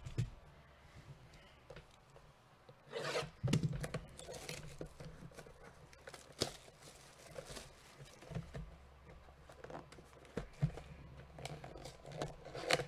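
Plastic wrap being torn off a cardboard trading-card box, with crinkling and tearing of the wrap, cardboard rubbing and scraping, and scattered clicks as the box is handled and its flap opened.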